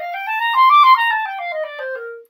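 Clarinet playing a smooth, connected C major scale: it climbs note by note through the upper register to a high altissimo E a little under a second in, loudest at the top, then steps back down to the C it started from.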